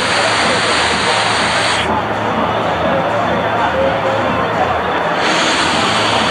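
A vape mod's dripping atomizer with a 0.13-ohm coil fired through a long draw: a continuous sizzling hiss of the coil and the air pulled through the drip tip. The hiss is brightest for the first two seconds and again from about five seconds in. Crowd babble runs behind it.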